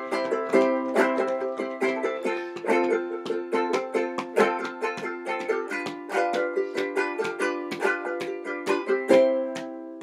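Handmade resonator ukulele with a cherry body and a Republic cone, strummed in a steady rhythm of chords. A last chord about nine seconds in rings and fades.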